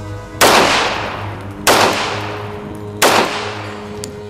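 Three shots from an M1911 .45 ACP pistol, fired a little over a second apart. Each is a sharp crack followed by a fading echo.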